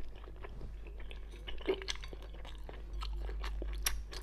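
A person chewing a whole mouthful of thin-skinned steamed stuffed bun (baozi), with many small mouth clicks throughout.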